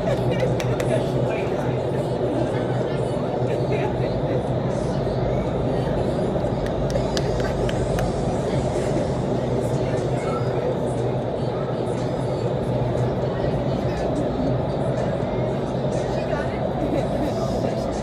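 Steady roar of the airflow in an indoor skydiving vertical wind tunnel, with a constant low hum beneath it.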